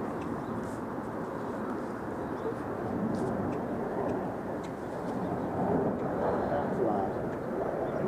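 Quiet, indistinct talk over a steady low background rumble.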